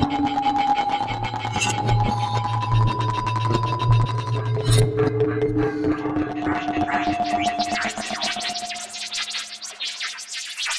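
Algorithmic electroacoustic computer music generated in SuperCollider. Sustained synthetic tones sit over a low drone that stops about halfway through, after which new held tones come in with a dense patter of quick high clicks.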